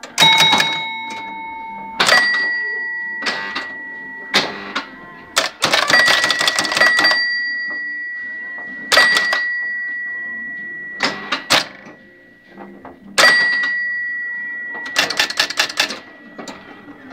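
Electromechanical scoring mechanism of a 1969 Maresa Oxford pinball machine at work: its score bells are struck about six times, each strike ringing on with a long fading tone, and the first one is pitched differently from the rest. Between the strikes come bursts of rapid clicking and clacking from the relays and the score stepping unit.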